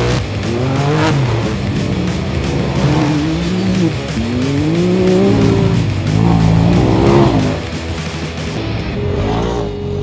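UTV engines revving hard, the pitch climbing and dropping again and again as the machines accelerate through loose sand. Music plays underneath.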